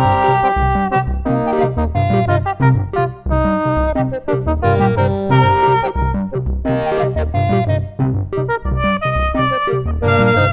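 Axoloti synthesizer patch played expressively from a ROLI Seaboard Block MPE keyboard: a busy run of pitched synth notes over a steadily pulsing low bass.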